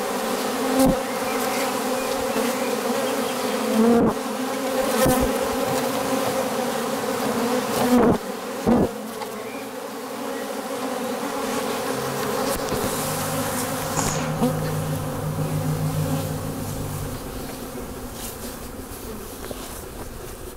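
Honeybees buzzing in a dense cloud at a hive entrance: a steady hum with several brief, louder buzzes. The hum fades over the last few seconds.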